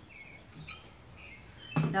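Faint bird chirps, short high notes coming a couple of times a second over quiet outdoor background, with a woman's voice starting at the very end.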